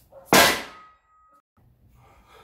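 One loud metal clang from a loaded steel strongman yoke, its frame and weight plates knocking together, about a third of a second in. A ringing tone hangs on after it and dies away over about a second.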